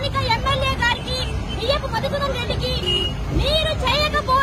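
A woman shouting in a high-pitched, strained voice in short bursts, over a steady low rumble of traffic.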